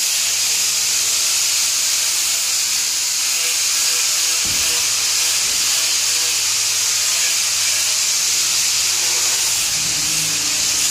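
A steady, loud hiss with a low hum beneath it, unchanging throughout, and a brief low knock about four and a half seconds in.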